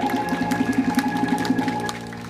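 Live music from a small band led by an electric keyboard: held notes over a quick, even percussive beat. The music drops away right at the end as the song finishes.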